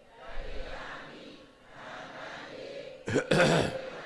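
A man clears his throat loudly about three seconds in, after a stretch of faint murmuring.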